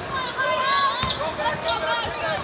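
A basketball being dribbled on a hardwood court, with voices in the background.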